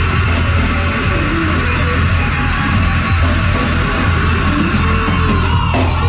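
Death metal band playing live at full volume: distorted guitars and bass over heavy drums, with a long held harsh vocal scream over the top that gives way to ringing guitar tones near the end.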